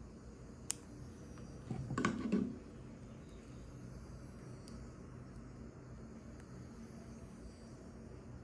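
Fingers handling a small plastic Bluetooth dongle and pressing its button: a sharp click just under a second in, then a brief louder patch of rubbing and knocking around two seconds in, and a couple of faint clicks later, over a low steady hum.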